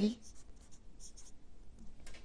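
A felt-tip marker writing a word on paper: a few short, faint strokes of the tip across the page.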